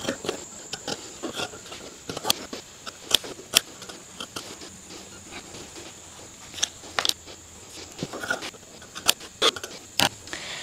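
Dressmaking shears cutting knit fabric on a tabletop: irregular, sharp snips and clicks of the blades, a few of them louder than the rest.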